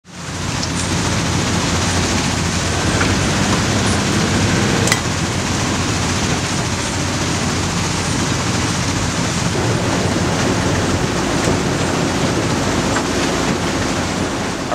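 Steady roar of heavy quarry machinery, an even rushing noise with a low engine drone underneath. It fades in at the start.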